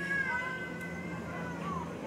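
A single high-pitched, drawn-out crying call lasting most of two seconds, wavering slightly in pitch and ending with a short rise and fall.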